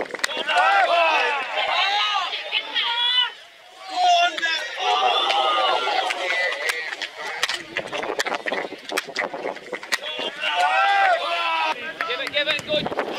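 Players and spectators shouting and calling out on a football pitch, several voices overlapping, with frequent sharp knocks mixed in. The sound drops out briefly about three and a half seconds in.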